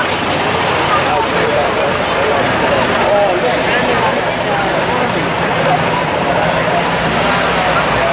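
A crowd of spectators chattering close by, over the low, steady running of slow-moving military vehicle engines, including an old army jeep's, as they pass.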